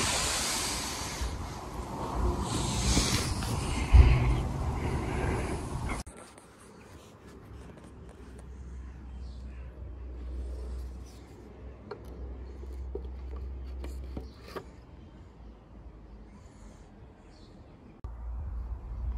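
Rubbing and scraping noise with a sharp knock about four seconds in. It cuts off suddenly to a faint low rumble with a few light clicks.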